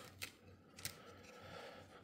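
Near silence, with two faint clicks in the first second and a soft rustle later from a trading card and a rigid plastic top loader being handled.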